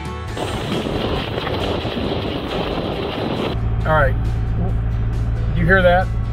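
A dense rushing noise while the vehicle is moving, then from about three and a half seconds in the steady low drone of the vehicle's engine and road noise heard from inside the cab, with two short bits of voice over it.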